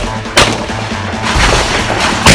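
A single pistol shot a little under half a second in, with its echo trailing off, over background music.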